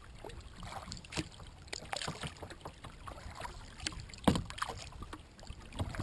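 Small waves lapping and splashing against a kayak's hull as it moves across the water, in an irregular patter of small splashes with a louder splash about four seconds in.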